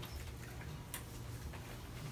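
Quiet room with a steady low hum and a few scattered light clicks, the sharpest about a second in.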